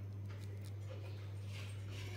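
A steady low hum with faint scattered clicks and rustles over it.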